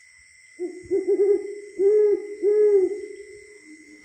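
Owl hooting: several rounded, rising-and-falling hoots in quick succession starting about half a second in, over a faint steady high whine.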